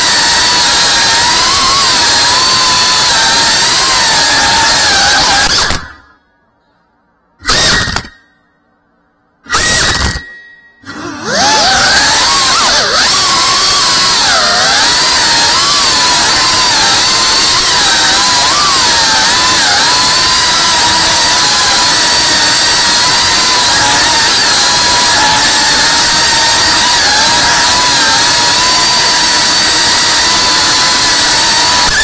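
Cinewhoop FPV drone's small brushless motors and ducted propellers whining at high speed, the pitch wavering up and down as the throttle changes. The sound cuts out three times between about six and eleven seconds in, then comes back with a rising whine as the motors spool up again.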